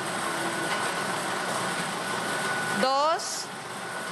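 Steady mechanical whirring of a lottery ball-drawing machine running while the second ball is drawn.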